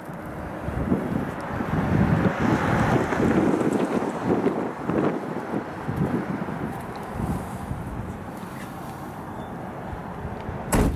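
Wind buffeting the microphone in irregular gusts, loudest a few seconds in and easing toward the end.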